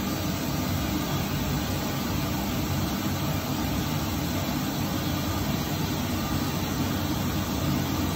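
Pink noise test signal from a Midas M32R mixer's oscillator played through a stage monitor loudspeaker: a steady, even hiss that does not change. It is the measurement signal used to read and equalise the monitor's frequency response.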